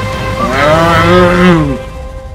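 A single long, low roar from a person, about a second and a half long, its pitch rising and then falling, over steady background music.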